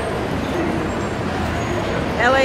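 Steady road traffic noise from cars and shuttle buses at a covered curbside roadway, with faint voices in the background.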